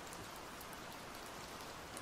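Faint, steady rain falling, with scattered light drop ticks.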